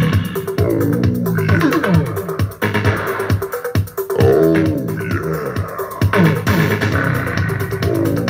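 Electronic music played loud through a homemade Bluetooth boombox's two 8-inch Rockville marine speakers, with a bass line of sliding, bending notes over a steady beat.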